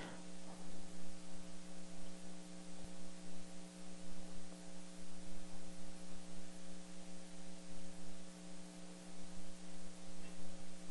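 Steady electrical mains hum over a faint hiss, the room tone of the recording.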